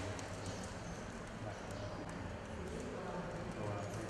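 Faint, indistinct voices over a steady low hum and a few light ticks.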